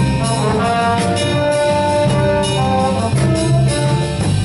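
A school jazz band playing: trumpets, trombones and saxophones hold sustained notes over bass and drums, with a few cymbal strokes.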